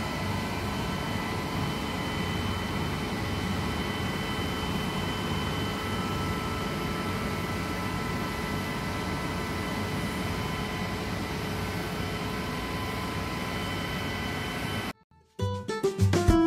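Electric motor-driven fire-water pump set running steadily: a constant hum with several high whining tones held at fixed pitch. It cuts off abruptly near the end, and a short jingly music sting follows.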